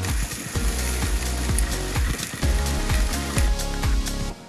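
Steaks and hamburger patties sizzling over the flames of a gas grill, with a steady hiss, a low rumble and irregular sharp knocks.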